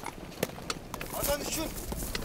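Horses' hooves clopping, a few separate hoofbeats, with a short call about a second in.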